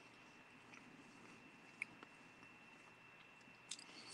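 Near silence with faint, closed-mouth chewing of buttered toast, and one small click a little under two seconds in.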